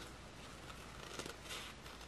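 Faint snips of scissors cutting through felt.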